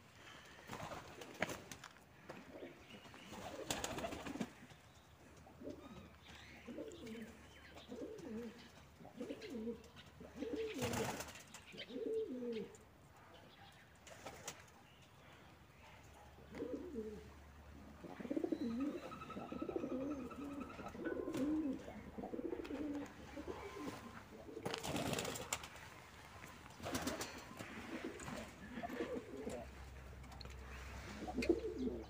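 Domestic pigeons cooing, many low warbling coos overlapping one after another. A few short noisy bursts break in, about four, eleven and twenty-five seconds in.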